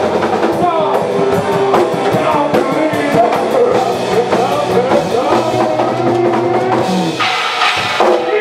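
Live band playing: drum kit, electric guitar and a man singing into a microphone, with a steady beat.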